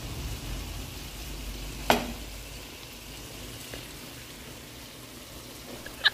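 Whole shrimp sizzling steadily in oil in a pan, with one sharp knock about two seconds in.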